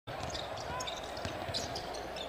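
A basketball being dribbled on a hardwood court over the low, steady murmur of an arena crowd, with a few brief high squeaks.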